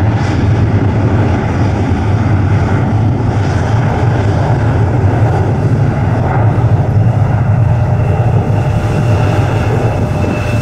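McDonnell Douglas DC-10F three-engine jet freighter on its takeoff roll, a loud, steady low rumble of its engines at takeoff power. A thin steady whine joins in near the end.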